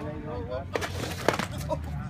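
A short clatter of sharp knocks, the loudest about a second and a quarter in, as a Onewheel board tips onto the asphalt and the rider's boots come down on the pavement, with voices around.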